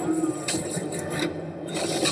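Action-film trailer sound effects playing back through a speaker: a few short scraping, whooshing hits over a low steady drone.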